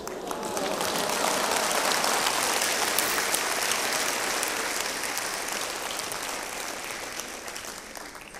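Audience applauding, building over the first two seconds and then slowly dying away toward the end.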